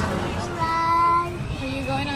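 A young girl's voice singing two long held notes, the second lower than the first.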